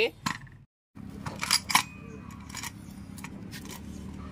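Metal clinks and rattles of workshop tools: a chain-type clutch holder and a clutch nut wrench being fitted onto a scooter's removed CVT clutch assembly. Two sharp clinks come about a second and a half in, then lighter ticks over a steady low background.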